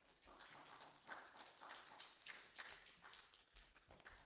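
Faint, irregular soft footsteps and shuffling, a few light steps a second.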